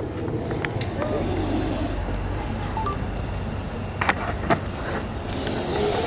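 Faint murmur of voices over a low, steady rumble, with a few sharp clicks.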